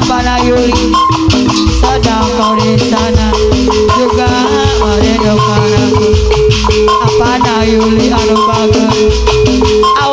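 Live jaipong band music played loud over a PA: dense percussion with low drum hits keeping a steady beat under melodic instruments, with one long held note through the middle.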